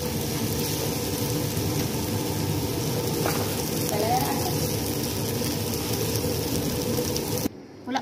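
Shredded chicken and vegetables sizzling steadily as they are stir-fried in a pan, stirred with a plastic spatula; the frying cuts off suddenly near the end.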